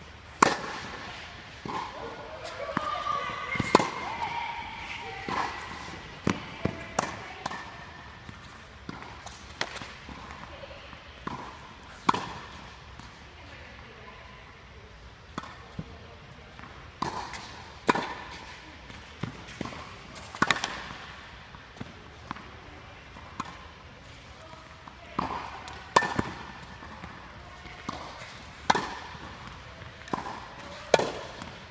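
Tennis balls struck by racquets and bouncing on an indoor hard court during a rally: sharp pops every second or two, each with a short echo from the hall.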